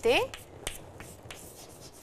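Chalk writing on a chalkboard: a run of light taps and scratches as letters are written, with one sharper tap a little past half a second in.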